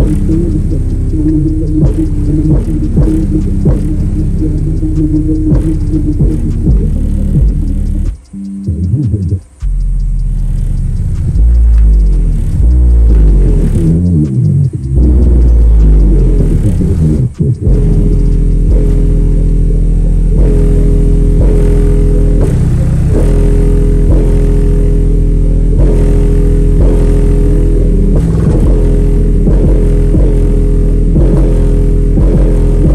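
Subwoofer in a plywood enclosure playing bass-heavy music loud, the deep bass dominating. The bass cuts out briefly a little after eight seconds and again near seventeen seconds, then comes back heavier.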